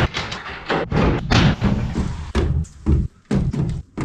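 Steel livestock gates clanging and banging against each other and the metal trailer as they are loaded, a quick run of sharp metal knocks with a short ringing after each, pausing briefly about three seconds in.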